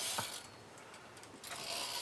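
Lace carriage of a Brother KH970 knitting machine being pushed to the left along the needle bed, a scraping hiss near the start and again near the end.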